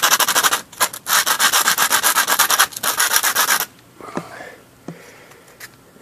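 White PVC pipe coupling rubbed hard back and forth on rough concrete: fast, gritty scraping strokes as the concrete grinds its raised lettering flat. The strokes break off briefly twice and stop about three and a half seconds in.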